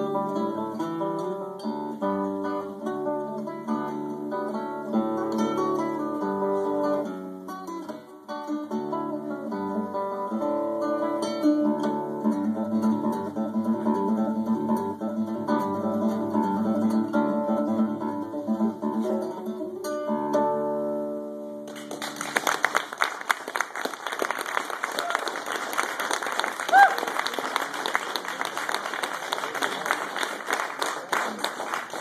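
Classical guitar played solo, a piece of plucked melody and chords that ends with a held final chord about two-thirds of the way through. Audience applause follows and runs on to the end.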